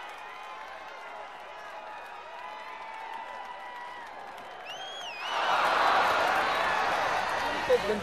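Spectators at a youth football match, faint and murmuring at first. About five seconds in, a short wavering whistle sounds, and then the crowd breaks into loud, sustained shouting and cheering.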